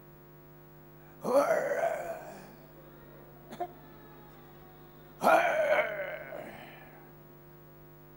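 Two long wordless vocal cries, about four seconds apart, each loud at first and then fading, over a steady electrical mains hum. There is a short click between them.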